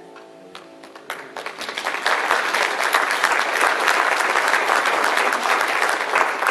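The last chord of a choir-and-orchestra anthem dies away, then congregation applause starts about a second in and builds to full, steady clapping.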